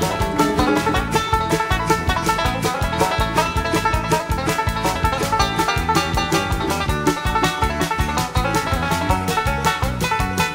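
Bluegrass band playing an instrumental break without vocals, led by a five-string banjo picking a rapid, even stream of notes over acoustic guitar and bass.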